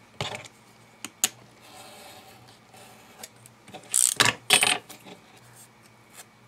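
Steel ruler and craft knife handled on a cutting mat: a few light metallic clicks, then two loud, short clattering sounds about four seconds in.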